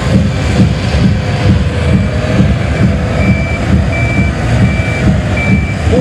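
Pulling tractor's diesel engine running loud with an uneven, heavy rumble. A reversing alarm beeps steadily over it, about once every 0.7 s, louder in the second half.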